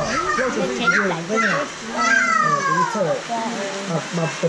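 Several people talking at once, a child's voice among them; a high voice slides down in pitch about halfway through.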